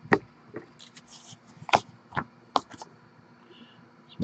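Sharp, irregular knocks and taps, about six in three seconds, as a sealed cardboard trading-card hobby box is handled and set down on a tabletop.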